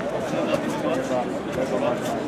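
Ringside crowd of spectators talking and calling out, many voices overlapping in a steady babble.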